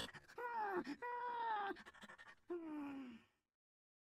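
Three drawn-out, voice-like wailing moans, faint beside the narration. The last is lower and slides down in pitch.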